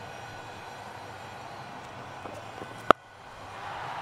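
A low steady hum of ground ambience, broken about three seconds in by a single sharp crack of a cricket bat striking the ball. The ball is a short delivery hit for six, taken off the top edge rather than the middle of the bat.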